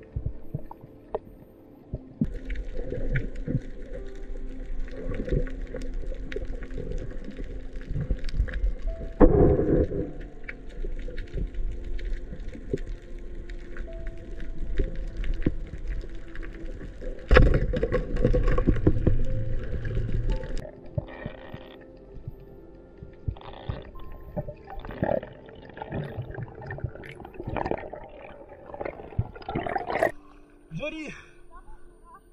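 Background music over underwater noise: bubbling and scattered clicks, with two loud thumps about nine and seventeen seconds in.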